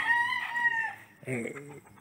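Rooster crowing once, a held call of just under a second that dips slightly in pitch as it ends.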